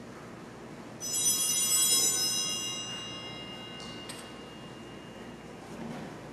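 Small altar bells rung during Communion at Mass. They start suddenly about a second in as a bright cluster of high metallic tones and die away over about three seconds, followed by a couple of light knocks.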